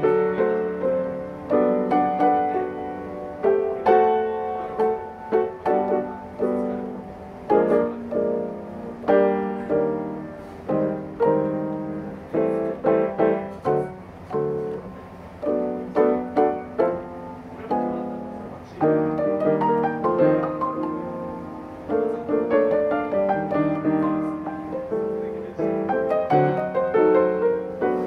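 Solo jazz piano played on an acoustic grand piano: a continuous run of chords and melody notes struck at an irregular pace, each ringing and fading.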